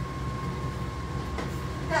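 A steady low rumble with a thin, steady high whine running under it, like a running machine or fan.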